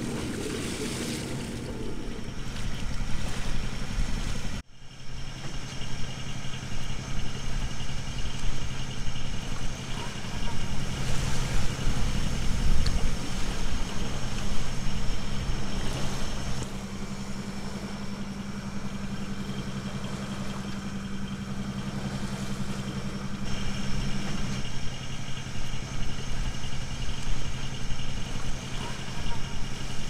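A sailing yacht's inboard engine running at steady revs while motoring, with a rushing noise of wind and water over it. There is a brief dropout about four and a half seconds in.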